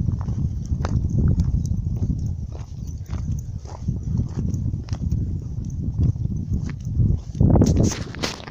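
Footsteps along a dirt and gravel path, with a heavy, uneven low rumble of wind on the microphone and a louder gust near the end.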